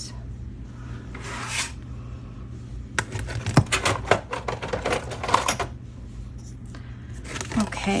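A brief rustle of fabric sliding on the mat, then a run of light clicks and taps as a clear acrylic quilting ruler is laid down and shifted on a plastic cutting mat, over a low steady hum.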